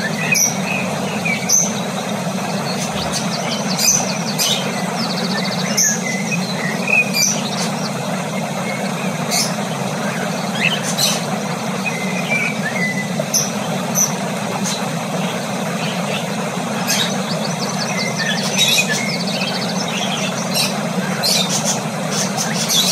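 Cockatiel pecking and husking seeds from a millet spray: sharp little clicks with scattered short, high chirps, over a steady low hum.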